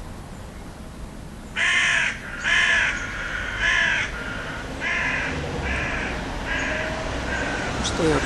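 A bird calling about seven times in a row, starting about a second and a half in; the first three calls are the loudest and the later ones are fainter.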